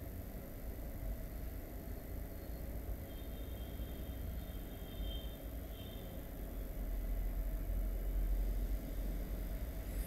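Steady low background rumble and hiss. A faint high tone comes in briefly a few times in the middle.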